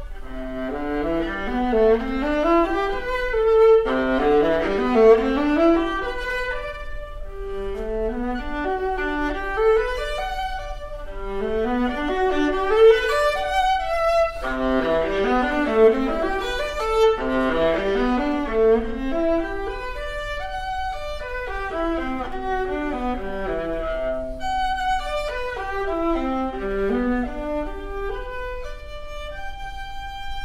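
Viola and classical guitar playing a classical duo piece together, in repeated falling runs of quick notes.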